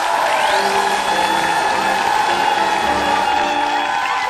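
Studio audience applauding and cheering over upbeat stage music with a repeating bass pattern.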